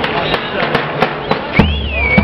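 A drum struck in a steady fast rhythm, about three sharp beats a second, over crowd voices. About one and a half seconds in, a high wavering whistle-like tone starts, rising and falling.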